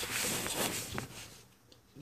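Rustling handling noise with a few light clicks as the plastic catch can parts are moved about, dying away after about a second and a half.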